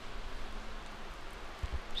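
Soft, quiet rubbing of hands smearing herb butter over the skin of a raw, tied turkey roll, over a steady low hiss.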